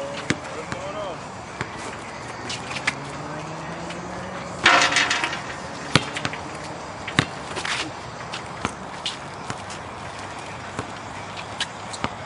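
A basketball bouncing and players' feet hitting an outdoor concrete court, heard as scattered sharp thuds, with a louder burst about five seconds in.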